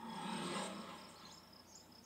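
Faint, steady, high-pitched insect chirping, with a brief soft muffled sound in the first second.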